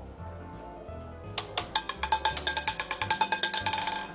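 Background music with a steady bass beat. From about a second in, a fast run of sharp, ringing clicks comes in, growing quicker and stopping abruptly near the end: the roulette ball clattering across the spinning wheel's frets after bets have closed.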